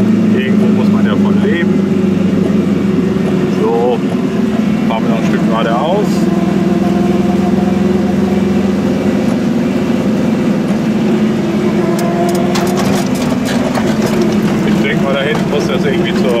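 Goggomobil's small two-stroke twin engine running steadily as the car drives along, heard from inside the cabin as an even drone. A few sharp clicks come about three-quarters of the way through.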